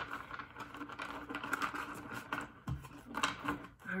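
A deck of tarot cards being shuffled by hand: a soft, irregular run of quick card flicks and slides.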